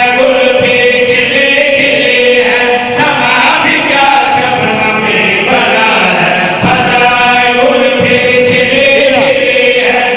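Men chanting a devotional verse together into microphones, singing long held notes.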